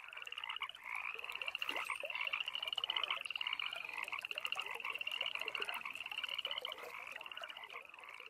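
Evening chorus of frogs and toads calling: many overlapping high trills and shorter croaking calls, growing a little fainter near the end.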